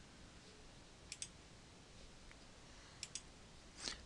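Computer mouse button clicked twice, about two seconds apart, each click a quick double tick of press and release, over near-silent room tone.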